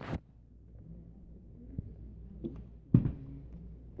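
A single sharp knock about three seconds in, over a low steady hum, with a couple of faint ticks before it.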